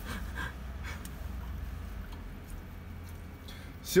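Steady low rumble with faint rustling and a few soft knocks as someone moves about on the seat of a truck cab.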